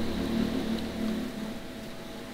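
A faint, steady machine hum in the background, with a voice trailing off in the first second.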